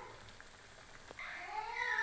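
Vettu cakes deep-frying in a kadai of oil, a faint sizzle. A light click comes about a second in, then a single drawn-out call that rises and falls in pitch, louder than the frying.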